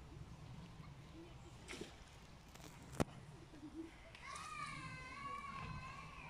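A child's high voice calling out in one long, wavering tone, starting about four seconds in. A single sharp click comes about halfway through, over faint low outdoor rumble.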